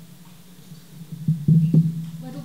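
A steady low hum, broken by a quick cluster of three sharp knocks about one and a half seconds in.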